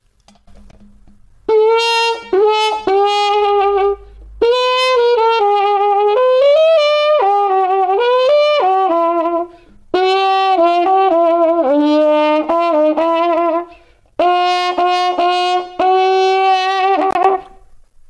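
Trumpet played through a Denis Wick adjustable cup mute, with the mute's cup held closed over the bell by hand as a plunger. It plays a muted melodic passage in the middle register, starting about a second and a half in, in four phrases with short breaks between them.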